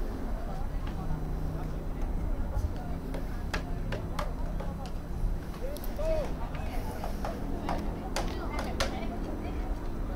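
Distant voices of players and people on the sideline over a low steady outdoor rumble, with a few short sharp sounds scattered through.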